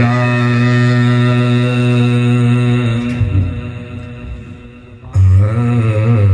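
A man's voice chanting a naat (devotional recitation) into a microphone, unaccompanied. He holds one long, steady note for about three seconds, lets it fade away, then starts a new, wavering phrase about five seconds in.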